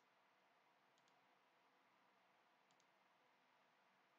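Near silence: faint room tone with two faint double clicks from a computer mouse, about one second in and again near three seconds in.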